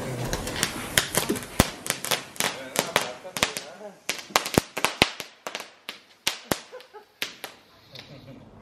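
Small ground fountain firework going off, with irregular sharp crackling pops several a second, thinning out in the second half.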